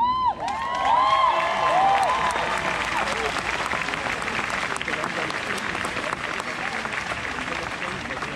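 Audience applauding, with several high whoops and cheers in the first three seconds. The clapping carries on steadily and eases off slightly toward the end.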